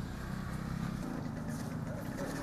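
Outdoor street background noise from the campaign footage: a steady low rumble with faint voices in it.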